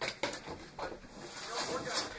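A person's voice, indistinct and away from the microphone, with a few sharp knocks or clicks, the first two in the first quarter second.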